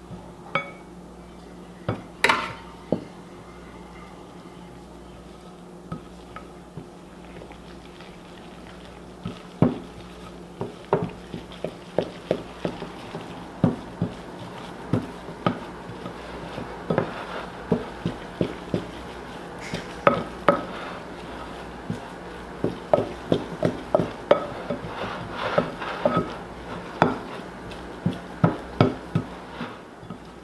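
Wooden spoon stirring flour into a wet dough mixture in a glass bowl, knocking irregularly against the glass again and again through most of the second half. A few sharper clinks in the first seconds as flour is tipped in from a metal measuring cup. A low steady hum runs underneath.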